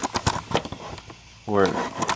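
Light handling clicks and taps, several in quick succession in the first half second, then fainter ticks, with one spoken word near the end.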